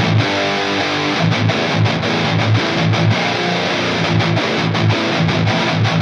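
Heavy metal instrumental passage: a distorted electric guitar plays a repeating riff on its own, sounding thin, without drums or bass.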